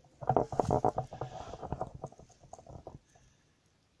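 Rustling, scuffing handling noise of movement over dry leaf litter. It is dense for the first couple of seconds and dies away about three seconds in.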